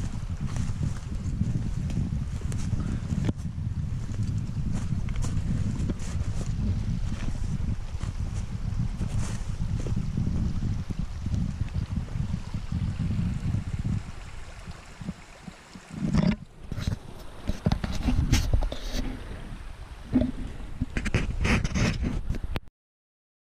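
Wind buffeting the microphone of a hand-carried camera, a steady low rumble, easing off about 14 seconds in. The last several seconds bring irregular bumps and knocks from the camera being handled.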